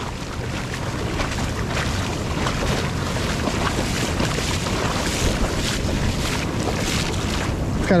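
Shallow ocean surf washing over sand: a steady rush of water and fizzing foam.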